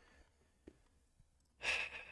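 Near silence, then a man's short audible breath about a second and a half in.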